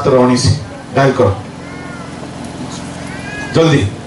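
A man's voice through a microphone in short, broken phrases over a steady low hum. In the long pause between phrases come two faint high calls that rise and fall.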